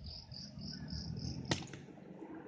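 A cricket chirping in a run of short, evenly spaced high pulses, about three a second, that stops about one and a half seconds in. A single sharp click comes where the chirping stops, over a low rumble.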